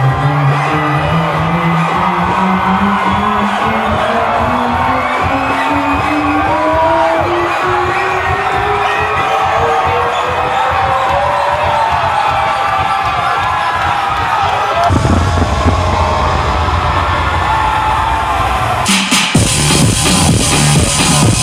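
Electronic dance music build-up: a long, slowly rising synth sweep over a cheering, whooping crowd. A heavy bass comes in about three-quarters of the way through, and the full track drops in just before the end.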